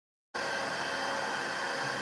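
Steady room noise: a continuous hiss with faint, steady high-pitched tones, which switches on abruptly about a third of a second in after silence.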